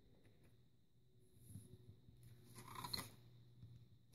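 Soft paper rustle as a page of a spiral-bound paper journal is turned, about two and a half seconds in; otherwise near silence.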